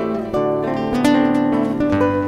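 Acoustic guitar playing a short instrumental passage between sung lines: a few plucked melody notes over ringing bass notes.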